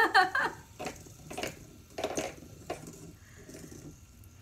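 Fidget spinner being spun and handled between the fingers: a faint whir with irregular clicks and knocks as it is flicked and caught.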